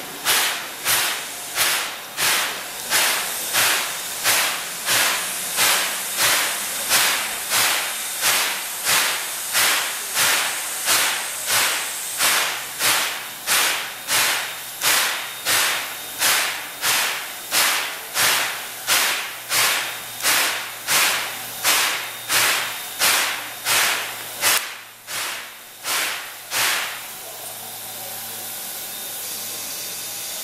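C10 8 steam locomotive standing at the platform, giving out sharp, evenly spaced hissing steam beats a little over once a second. Near the end the beats stop, leaving a steady hiss.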